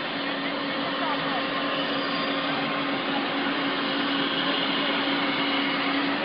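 Steady whirring machine noise with a constant low hum, under faint background voices.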